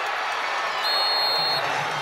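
Football stadium crowd noise, a steady roar of many voices reacting to a game-ending incomplete pass. A brief high, steady whistle tone sounds about a second in.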